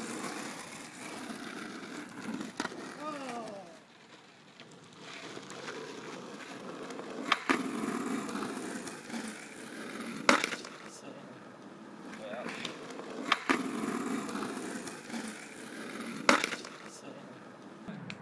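Skateboard wheels rolling over rough tarmac with a steady grinding rumble. In the second half come four sharp cracks of the board hitting the ground, about three seconds apart.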